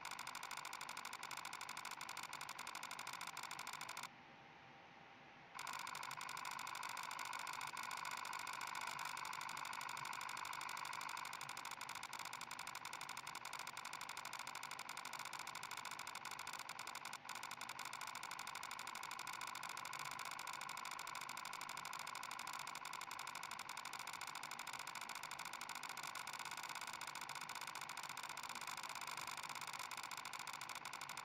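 A machine running with a steady whir and several high whining tones. About four seconds in it turns duller for a second or so, then the whine returns.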